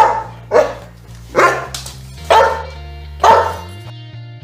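A dog barking five times: two quick barks, then three more about a second apart each.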